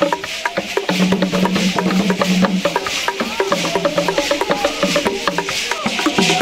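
Traditional Kougang dance music: skin-headed drums and sharp knocking wooden percussion in a fast, dense rhythm, with a shaken hiss over it.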